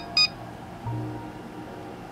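A single short high electronic beep from a Cellpro PowerLab 6 battery charger as its button is pressed to confirm and start a charge. Faint steady background music follows.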